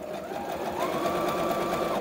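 Brother PS300T computerized sewing machine stitching a zigzag stitch through fabric. Its motor tone rises about a second in as it speeds up, and it stops right at the end.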